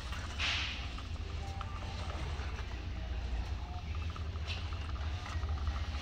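Shopping cart rolling over a smooth store floor: a steady low rumble from the wheels with a few faint rattles and clicks, and a brief hiss about half a second in.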